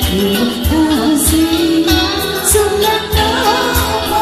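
A woman singing a Tamil Christian worship song into a microphone, accompanied by a band with a steady beat.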